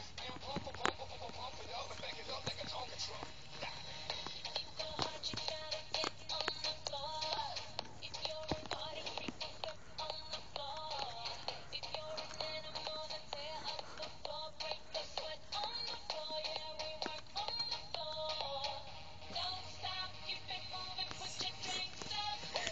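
Faint music with a sung melody playing continuously.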